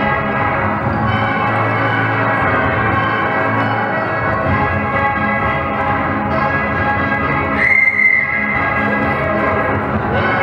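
Ragtime dance music playing throughout. About eight seconds in, one short, loud whistle blast on a single held note cuts through the music.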